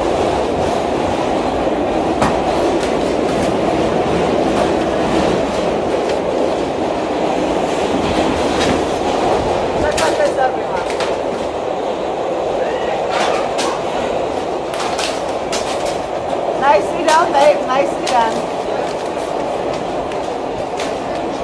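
Interior noise of a moving New York City subway car: a steady rumble of the train running, with sharp clicks and clanks scattered through it. Voices are heard briefly near the end.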